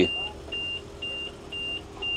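Volkswagen Constellation truck's cab warning buzzer beeping, short high beeps about twice a second, four in all. This is the cab's alert for the ignition key left turned on.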